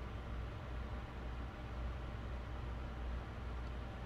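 Steady low hum with a faint even hiss: room background noise, with no distinct sound event.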